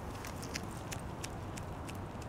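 Footsteps of a person walking on a concrete walkway, faint light ticks about twice a second over a steady low background hum.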